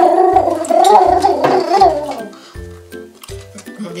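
Background music with a steady, repeating bass line. Over it, a person makes one drawn-out, wavering vocal sound that fades out about two seconds in.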